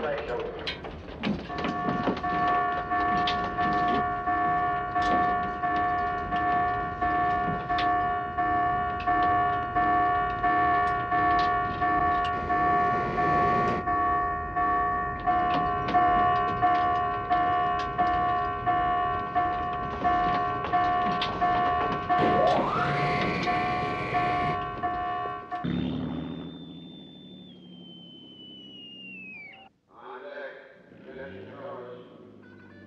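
Warship's general quarters alarm sounding, a steady pulsing tone repeating about twice a second over the clatter of sailors' feet on steel decks and ladders. It cuts off suddenly about 25 seconds in, and a high tone slides downward near the end.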